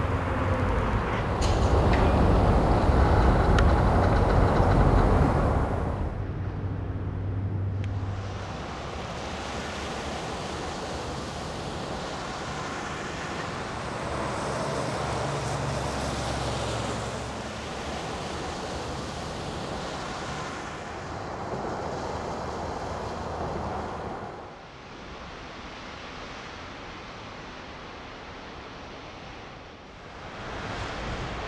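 Outdoor road traffic: a heavy low engine rumble is loudest in the first few seconds, then gives way to steadier traffic noise, with a vehicle passing around the middle. The sound drops to a fainter hush near the end.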